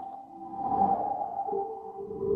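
Steady, held tones sounding together, with a new lower tone joining about three quarters of the way through.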